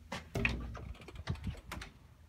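Metal-framed glass door with push-bar handles being pushed open. A heavy clunk of the latch comes about a third of a second in, followed by a quick run of clicks and knocks.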